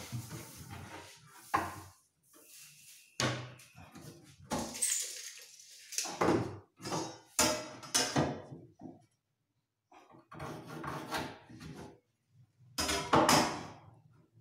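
Hand work on the edge of a plywood cabinet panel: irregular rubbing strokes and knocks against the wood, loudest near the end.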